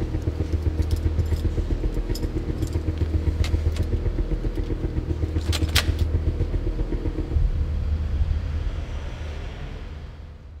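Car engine running steadily, heard from inside the cabin, with a low rumble and a few light clicks about three and a half and six seconds in; it fades away near the end.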